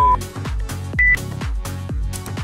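Interval-timer countdown beeps over electronic dance music with a steady beat: a short low beep, then a single higher-pitched beep about a second in marking the end of the rest and the start of the work interval.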